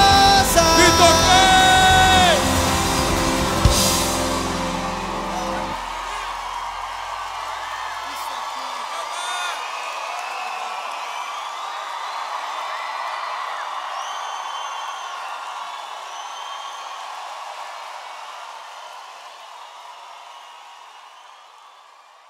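A live pop-rock band ends a song on a held sung note and a ringing final chord, closing with a last hit about four seconds in. A large audience then cheers, whoops and applauds, and the crowd noise slowly fades out near the end.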